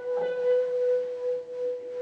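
A single sustained electric guitar tone ringing through an amplifier, steady in pitch and held through the whole moment.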